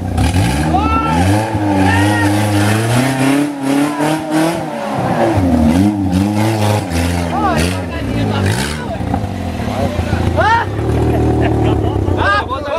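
Off-road buggy engine revving hard in repeated rises and falls while the buggy is hauled out of deep mud on a tow strap, with men shouting over it. The revving eases off about nine seconds in.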